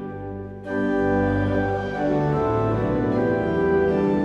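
Pipe organ playing a hymn tune in sustained full chords. There is a brief break just at the start, and the next chord comes in about half a second later.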